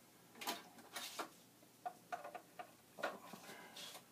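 A string of short plastic clicks and knocks, about eight or ten at uneven spacing, as Commodore floppy disk drives are handled at their front panels.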